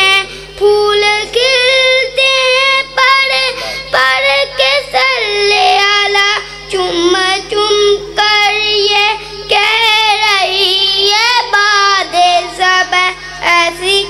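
A boy singing a naat solo into a microphone, with no accompaniment: long held notes with a wavering vibrato and ornamented melodic turns, broken by short pauses for breath.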